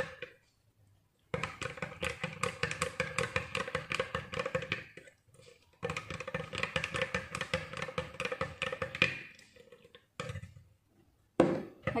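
A metal spoon stirring honey into a thick turmeric-ginger drink in a glass mug, clinking rapidly against the glass. It comes in runs of a few seconds with brief pauses between.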